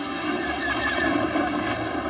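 Steady low engine-like rumble, like an aircraft or spacecraft passing, in a film soundtrack.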